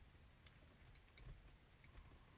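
Near silence, broken by a few faint, brief clicks.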